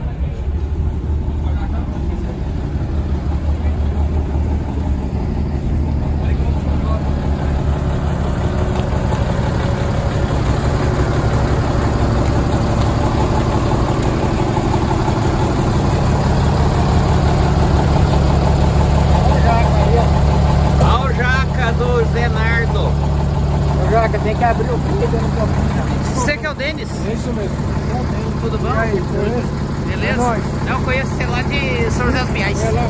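Truck engine idling steadily, with people talking over it in the second half.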